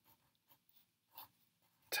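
Faint scratching of a pen writing digits on squared paper: a few short, light strokes, one slightly louder about a second in.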